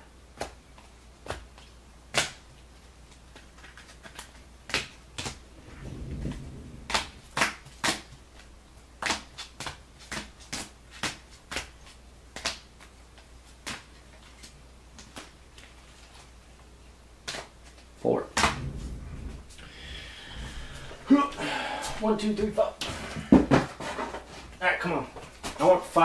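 Irregular sharp clicks and taps, roughly one or two a second, from small things being handled at a desk. A voice talks quietly through the last several seconds.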